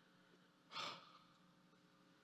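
A single short sigh or breath into the microphone about three-quarters of a second in, against near silence.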